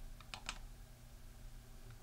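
Three faint, quick clicks within the first half second from the computer controls being worked to zoom the image, over a low steady hum.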